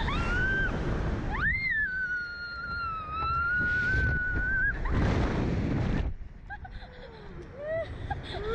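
A rider screaming on a slingshot catapult ride: short rising shrieks, then one long high-pitched scream held for about three seconds, with rushing wind buffeting the microphone in bursts. Near the end, short yelps and laughing cries.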